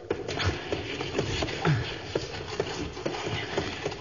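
Radio-drama sound effect of a creature scuffling and scurrying away across a cave floor: a dense rustling, shuffling noise broken by many short sharp scrapes.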